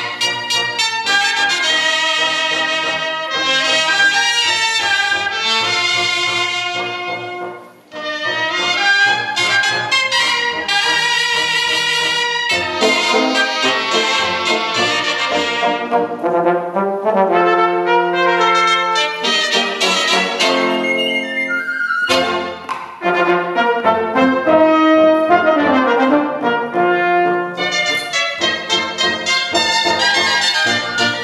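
A cobla, the Catalan wind band of flabiol, tibles, tenores, trumpets, trombone, fiscorns and double bass, playing a sardana live, with the brass prominent. The music breaks off briefly about eight seconds in, then carries on, with held chords a little past the middle.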